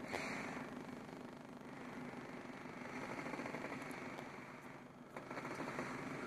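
Faint, steady background hum inside a car's cabin, with no distinct events.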